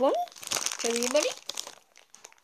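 A voice muffled by a mouthful of marshmallows, straining out "chubby bunny" in two short sounds that rise in pitch, with breathy hissing between them.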